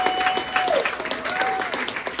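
A small audience clapping and applauding, with one voice giving a long drawn-out cheer early on and a shorter one a second later.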